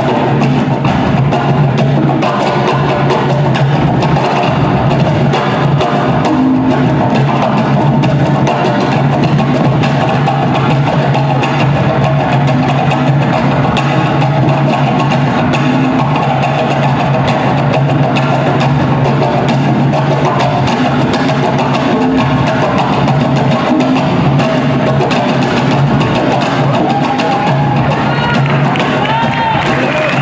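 Ensemble of cajóns, wooden box drums, struck by hand in an improvised group groove: a dense, continuous stream of slaps and bass strokes on the wooden fronts, at an even level throughout.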